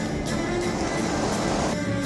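Background film-score music with a steady, evenly repeating beat.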